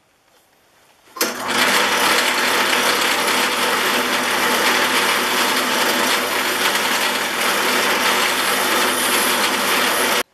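Bench grinder's wire wheel spinning while nickel-plated jointer-gauge parts are held against it: a steady hiss of wire brushing on metal over the motor's hum, shining up the nickel plating. It starts abruptly about a second in.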